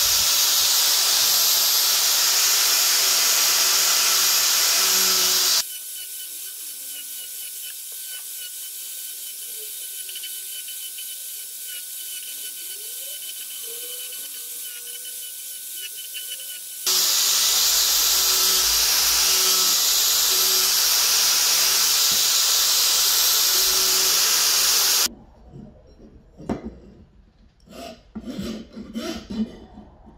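Angle grinder with a sanding disc running and sanding a wooden knife handle, a steady high-pitched grinding noise; about five seconds in it drops much quieter, then comes back loud about eleven seconds later. Near the end the grinder stops and a hand file rasps across the wood in separate strokes.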